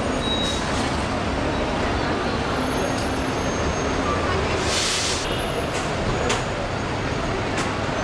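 Steady curbside traffic rumble from idling and passing vehicles, with a short hiss about five seconds in.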